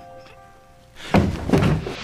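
Held notes of a dramatic score die away, then two loud, heavy thuds land about a second in, the second about half a second after the first.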